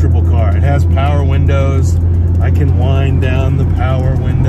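Alfa Romeo 155 Twin Spark's four-cylinder engine and road noise heard from inside the cabin while driving: a steady low drone under a man talking.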